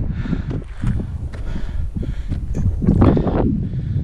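Wind buffeting the microphone of a body-worn camera, an uneven low rumble, with a louder rush about three seconds in.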